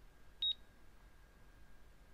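A single short mouse click with a brief high ping about half a second in, as a key on the simulated HMI's on-screen password keypad is clicked.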